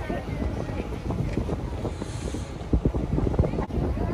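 Wind buffeting the microphone on a moving sightseeing boat, over the boat's low rumble across the lake; the gusts hit harder a little before three seconds in.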